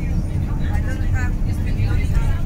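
Steady low rumble of a coach bus's engine and road noise inside the passenger cabin, with passengers' voices answering.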